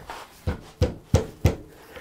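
A small steel chisel knocking and prying at the joint between a turned basswood core and the piece below it, which are held together with double-sided turner's tape. It makes four short, sharp knocks, about three a second.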